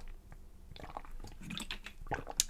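Someone drinking water from a large plastic water bottle: soft gulps and swallows with small mouth and plastic clicks.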